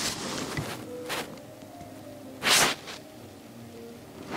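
Quiet room with faint music in the background and a short hissing rustle about two and a half seconds in.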